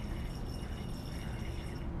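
Deionized water squirted from a squeezed plastic wash bottle into a glass beaker, a steady trickle of liquid filling it.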